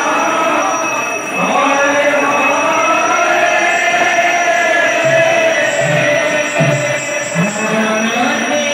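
Devotional kirtan singing: a male voice through a microphone and loudspeaker holding long, wavering notes, with barrel drums struck several times in the second half.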